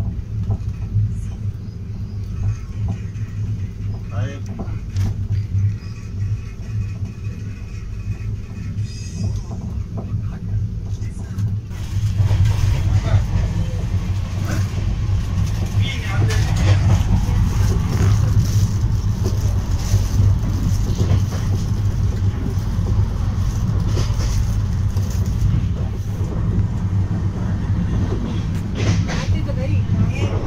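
Steady rumble of a Shatabdi Express passenger coach running at about 105 km/h, heard from inside the chair car. It grows louder, with more rushing noise, about twelve seconds in.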